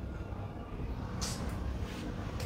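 Bedding rustling briefly, twice in the second half, as a person shifts on a bed, over a steady low background rumble.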